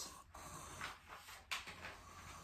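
Faint scratching of a pencil drawing lines on paper, with a sharper tick about one and a half seconds in.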